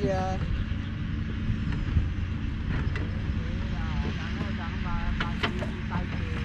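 Faint, distant conversation between people over a steady low rumble and hum, with a brief sharp click about five seconds in.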